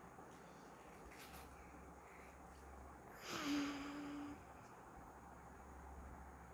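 Mostly quiet, with one breathy sigh about three seconds in that ends in a short held hum of about a second.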